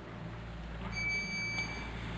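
A single electronic beep from the council chamber's voting system, one steady high tone about a second long, starting about a second in. It signals that the vote is open.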